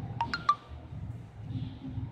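Three quick, light clinks with a short ring, all within about a third of a second near the start, over a steady low background hum.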